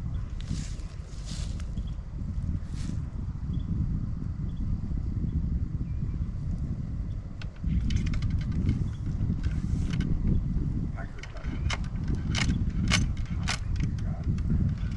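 Wind rumbling on the microphone, with a run of sharp clicks and taps from about halfway, thickest near the end, as a ramrod is worked down the barrel of a 20-gauge flintlock muzzleloading shotgun to seat the load on the shot.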